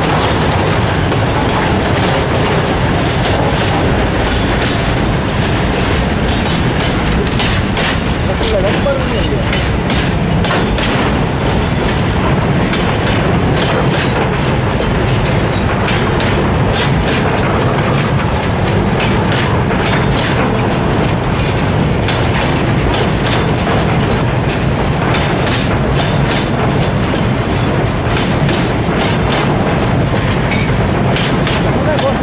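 Freight train wagons rolling past: a steady loud rumble of steel wheels on rail, with rapid clickety-clack as the wheels cross the rail joints.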